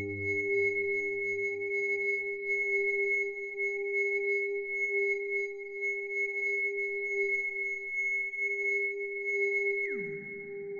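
Mutable Instruments modular synthesizer holding a few pure, sine-like tones, a strong middle one and a high one with fainter tones above, with a slight waver. Lower notes fade out about a second in, and right at the end the tones drop in a quick downward sweep.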